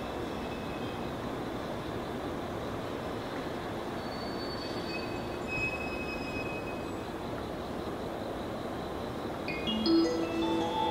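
A JR 185 series electric train rolls slowly along the platform track: a steady low running noise with a faint, thin high squeal about halfway through. Just before the end a rising multi-note chime sounds.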